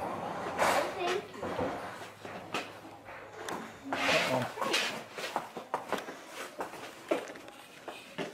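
Horse's hooves knocking and clopping irregularly on the barn floor as it is led out of its stall, with low voices in between.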